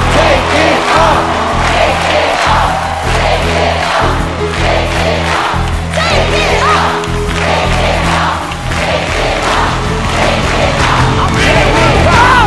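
Reveal music with held, pounding bass notes under a studio audience and judges cheering and screaming.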